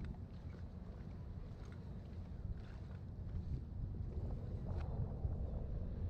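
Wind rumbling on an action camera's microphone, a steady low buffeting, with a few faint ticks over it.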